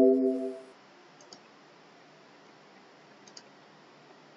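The tail of a Windows alert chime, a chord of a few tones fading out in the first half-second as a warning dialog box appears. Then two faint mouse clicks about two seconds apart.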